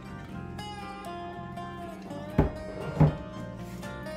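Background acoustic guitar music with two sharp knocks a little over halfway through, about half a second apart, as the glass jug and jars are set down on the wooden table.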